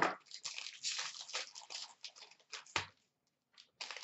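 Hockey card pack wrappers crinkling and tearing as they are opened by hand, with a sharper snap nearly three seconds in and a short lull near the end.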